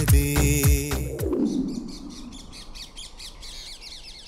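Background music fades out in the first second or so. Then many birds chirp in a dense chorus of short, high, quickly repeated calls.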